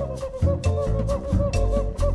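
Studio jazz recording: double bass playing low notes with drums, percussion and piano in a steady beat.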